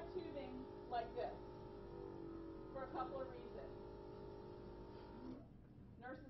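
Portable medical suction unit's motor running with a steady hum, then stopping abruptly about five seconds in. Brief bits of a voice can be heard over it.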